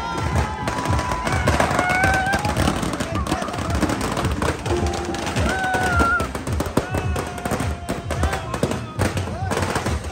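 Loud live band music for a dancing crowd: a wavering melody over dense, rapid drumming that crackles like firecrackers, with crowd voices mixed in.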